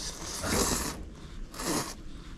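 A person slurping noodles from a bowl of soup: a long slurp, then a shorter one about a second and a half in.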